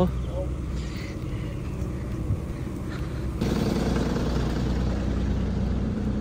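A steady low outdoor rumble, which about halfway through jumps louder into a city bus's engine idling close by at the stop, with a steady hiss over it.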